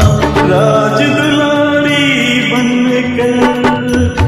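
Hindi devotional bhajan music (a Shiv bhajan to a Bollywood film tune) carrying a long held melodic note, with the bass and beat dropping away after about a second.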